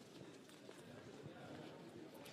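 Faint footsteps of a group walking on a hard floor, with faint voices mixed in.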